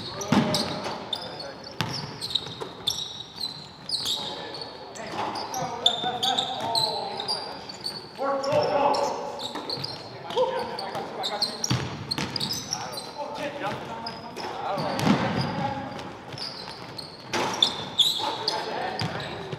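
Live basketball game sound on a hardwood gym court: the ball bouncing, many short high sneaker squeaks, and players' voices calling out.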